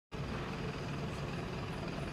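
Steady street traffic noise with a low engine hum, typical of a vehicle idling.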